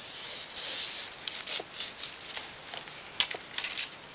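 The long spiral zipper of a ZipIt Cabana bag being run open, unwinding the bag into a single strip. There is a steady rasp for about the first second, then short scattered zips and clicks as the strip is pulled apart.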